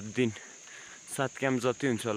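Steady high-pitched insect chorus, a continuous shrill drone, running under a man's talking.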